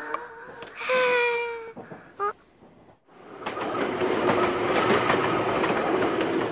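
A train passing close by: its rumble builds from about three seconds in and runs on steadily with a faint hum. Before it, about a second in, there is a brief held tone.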